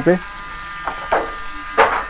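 Small battery-operated motor of a toy handheld dust cleaner running with a steady high whine. Two short noises come through about a second in and again near the end.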